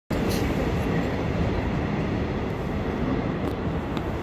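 Electric commuter train running on the rails with a steady low rumble.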